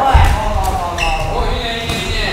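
Boxing gloves smacking as punches land during sparring: several sharp hits spread over two seconds, with dull thuds of footwork on the ring canvas.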